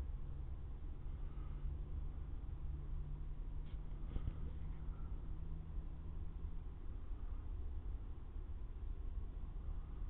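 Faint, steady low background rumble of the night outdoors, recorded through a thermal monocular's built-in microphone, with a faint hum that drops out about two-thirds of the way through. A few faint clicks come about four seconds in.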